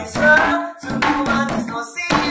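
A man singing a sholawat (Islamic devotional song) melody, accompanied by hand-struck percussion keeping the rhythm. The singing breaks briefly just under a second in, then carries on.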